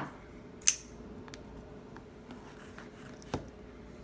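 Folding knife flicked open one-handed: the blade snaps out and locks with one sharp click about a second in, followed by light handling noise and a second, fainter click later.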